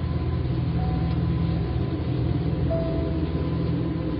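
A steady deep rumble with a faint constant higher tone over it, and a short higher note in the second half.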